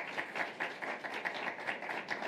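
Audience applauding, a dense patter of hand claps.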